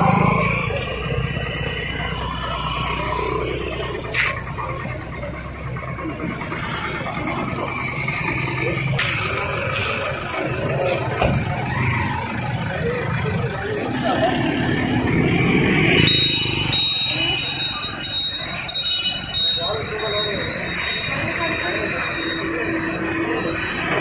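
People talking over the engines of idling motorbikes and cars, with a low engine rumble heaviest in the first few seconds. A thin, steady high-pitched tone comes in about two-thirds of the way through and holds.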